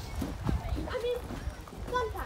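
Indistinct voices talking, with footsteps knocking on pavement and handling rumble from a phone carried while walking.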